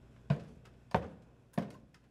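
Footsteps: three even thuds about two-thirds of a second apart, each with a short echo.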